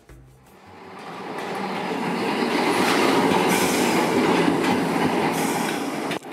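An electric streetcar rolling along its street rails, the wheel-on-rail rumble growing louder over the first two seconds and staying loud as it passes.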